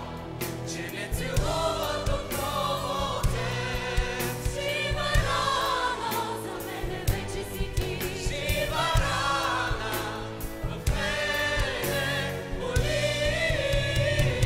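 Mixed choir and solo voices singing a song in harmony over an instrumental backing with a regular beat.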